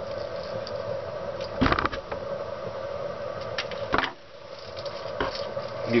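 Steady low hum with a few sharp clicks and knocks from tabbing wire and a wire spool being handled on a plywood workbench, the loudest a little under two seconds in.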